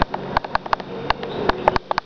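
A quick run of light, irregular clicks and ticks, more than a dozen in two seconds.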